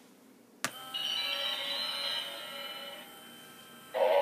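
Animatronic genie head prop starting up: a sharp click about half a second in, then a held musical chord from its built-in speaker that drops in level about three seconds in.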